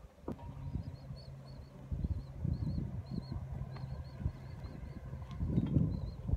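Wind buffeting the microphone in uneven low gusts over a steady low hum, louder near the end, with faint quick high chirps repeating through.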